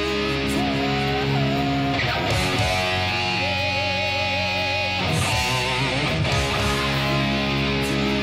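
Distorted Jackson electric guitar played along with a heavy metal backing recording: held chords over drums, with cymbal crashes about two and five seconds in. Sustained notes with vibrato run through the middle.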